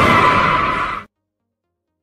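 Loud edited sound effect: a sustained noisy rush with a steady high tone running through it, cutting off suddenly about a second in.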